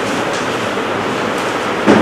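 Steady rushing background noise with no clear pitch, with a sudden louder sound just before the end.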